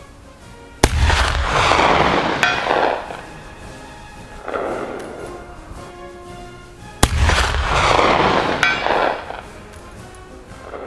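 Two shots from a Mk I Martini-Henry .577/450 black-powder rifle about six seconds apart, each a sharp report that rolls away in a long echo. About a second and a half after each shot comes a short metallic ring, the bullet striking the steel gong target at 300 yards. Faint background music runs underneath.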